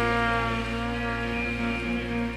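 Live band in an instrumental break: a trumpet and the band hold a long sustained chord, easing off slightly near the end.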